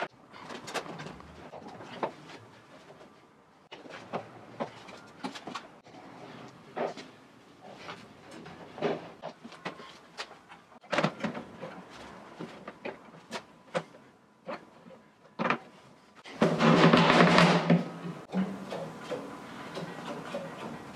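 Ropes of a rope-tension drum being hauled tight by hand: irregular knocks, taps and rubs of rope, tugs and hoops. About 16 s in comes one louder, drawn-out pitched sound lasting about two seconds.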